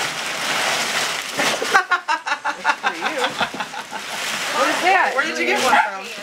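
Crumpled newspaper packing rustling and crinkling as hands dig through a cardboard box, with a run of quick crackles about two seconds in.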